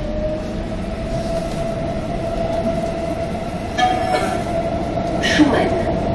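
Brussels CAF Boa metro train heard from inside the car: a steady rumble of wheels on rail under a whine that rises in pitch, then holds steady as the train gets up to speed. A brief squeal comes about four seconds in, and passengers' voices start near the end.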